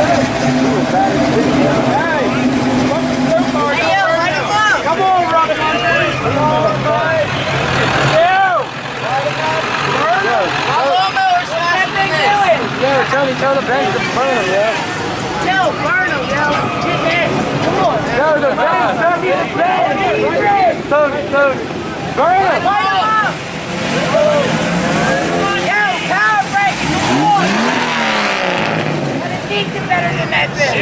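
Cars and trucks driving past with their engines running, one engine revving up and back down near the end, over a crowd of spectators talking and shouting.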